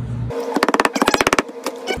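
A rapid rasping run of clicks for about a second as a palm presses and rubs a glued leather flap flat onto contact cement.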